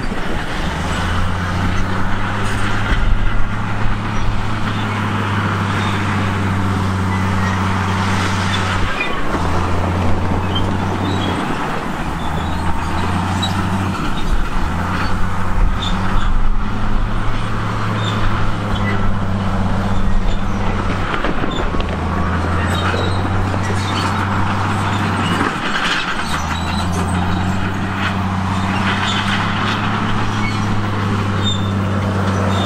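Heavy diesel earthmoving machinery working: a low, steady engine hum that breaks off briefly several times, over continuous grinding rumble and scattered knocks.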